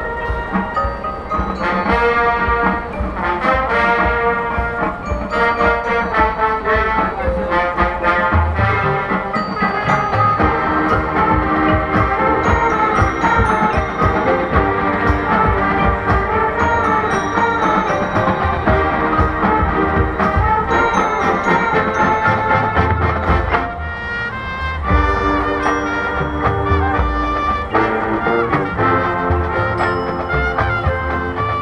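College marching band playing: brass (trumpets and trombones) carrying the melody over front-ensemble mallet percussion, with bass drum hits coming in about a third of the way through. The band thins out briefly about two-thirds of the way in, then comes back full.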